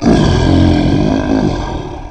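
A lion roaring once, loud from its sudden start, held for about a second and a half and then fading away.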